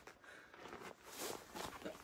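Faint scuffing footsteps and rustling handling noise, a few soft scrapes in the second half; the snowmobile's engine is not running.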